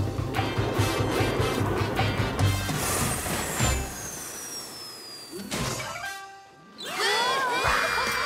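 Cartoon sound effects of a rocket coming down to land: a low rumble with crashes, and a long falling whistle. The sound dies away, and music starts near the end.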